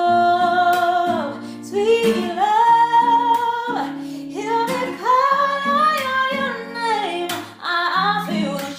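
A woman singing a slow song in long held notes that bend and waver, over plucked acoustic guitar.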